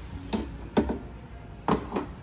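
About four sharp, irregular knocks of hard plastic toys bumping against a plastic play vehicle.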